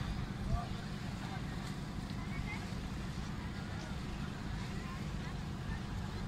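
Steady low rumble of wind on the microphone, with faint, indistinct voices in the distance.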